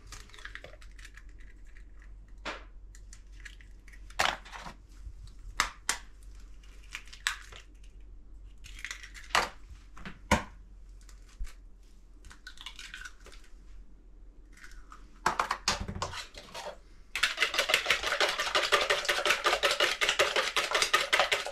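Eggs being cracked against the rim of a bowl, scattered sharp taps and shell cracks, with a louder knock a little after the middle. About three seconds before the end, fast, even beating of the eggs in the bowl begins.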